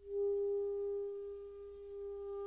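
Music: a single steady, nearly pure note held throughout, coming in abruptly at the start after a higher note has faded away.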